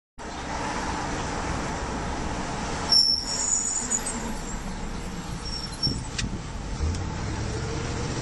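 Car cabin road noise from a taxi driving along: a steady rush of engine and tyres heard from the back seat. There is a brief high-pitched squeak about three seconds in and a short click near six seconds.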